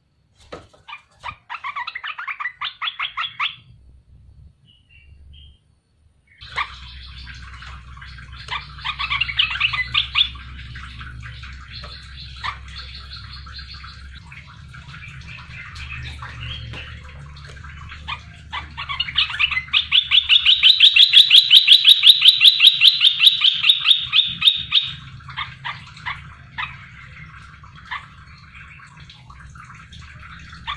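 A caged olive-winged bulbul (merbah belukar) singing in quick chattering phrases. The loudest part is a long run of rapid repeated notes about twenty seconds in. A low steady hum runs underneath from about six seconds in.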